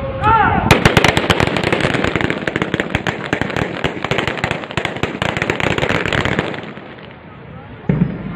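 A drawn-out shouted parade command ends, and within a second a dense crackle of many sharp pops starts. The crackle runs about six seconds and fades out near the end.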